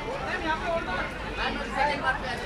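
Several people talking at once in overlapping chatter, with no single voice standing out.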